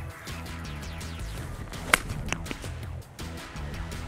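A golf club striking the ball once, a sharp crack about two seconds in, over quiet background music.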